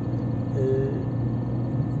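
Steady low drone of a car's engine and tyres heard inside the cabin while driving.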